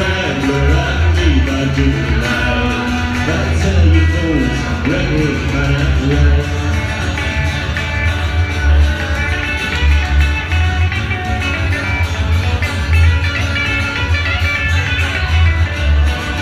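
Live old-time country swing and rockabilly trio playing: electric lead guitar over strummed acoustic rhythm guitar and an upright double bass keeping a steady pulse of bass notes.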